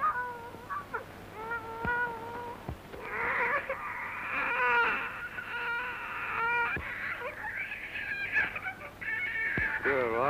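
A baby crying in the basket: repeated wailing cries that rise and fall in pitch, coming thicker and louder from about three seconds in.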